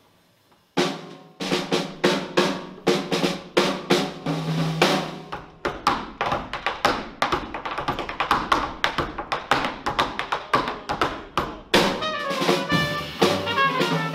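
Jazz drum kit solo: snare, bass drum and cymbal strikes in a quick, busy pattern, starting after a brief pause about a second in. Near the end the horns and the rest of the band come back in.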